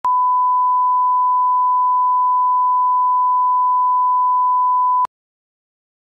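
Steady 1 kHz line-up test tone, the reference tone that goes with colour bars, held at one pitch and cutting off suddenly about five seconds in.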